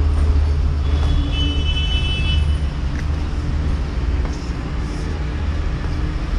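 Steady low rumble of distant road traffic, with a brief high-pitched tone from about one to two and a half seconds in and a few faint footfalls on brick rubble.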